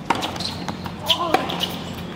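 A tennis ball being struck by rackets and bouncing on a hard court during a rally: a few sharp pops, one near the start and a couple about a second in.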